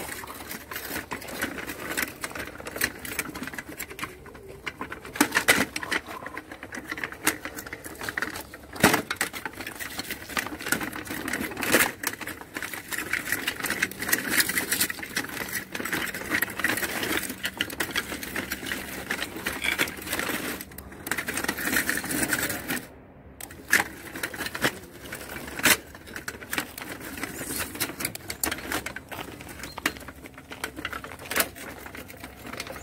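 Homemade tracked robot's electric drive motors whirring as its cleated tracks clatter over wooden beams, with a rapid run of clicks and several sharper knocks as it climbs. The whir holds a steady hum for a stretch partway through and stops briefly before it starts again.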